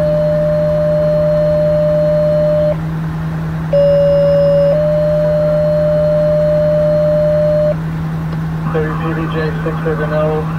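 Fire dispatch two-tone pager alert over scanner radio: a steady lower tone for about a second, then a slightly higher tone held for about three seconds. The first page ends a few seconds in, the full sequence sounds once more, and a dispatcher starts talking near the end, all over a steady low hum.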